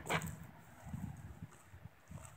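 Faint wind buffeting the microphone: soft, irregular low rumbles, strongest about a second in.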